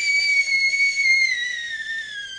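A high, steady whistling tone with fainter overtones, sagging slightly lower in pitch in the second half.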